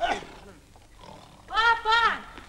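A girl's short shout of "Papa!", then about one and a half seconds in a loud, drawn-out vocal sound with a steady pitch that drops at the end.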